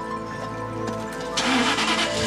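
A Jaguar XK8 convertible's engine starting, catching in a short loud burst about one and a half seconds in, over steady background music.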